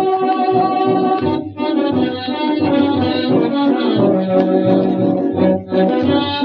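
Early Korean popular song playing from a 1941 Okeh 78 rpm shellac record: a dance band with brass carries the melody, with two brief dips between phrases.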